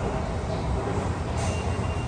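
Subway train running, a steady low rumble, with a faint thin whine in the last half second.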